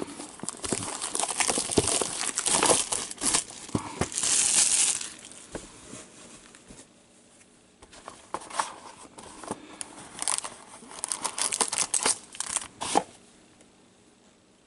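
Plastic shrink wrap and a cardboard trading-card box being torn and crinkled open, with one long tear about four seconds in. More crinkling follows from about eight seconds in as a foil-wrapped card pack is lifted out.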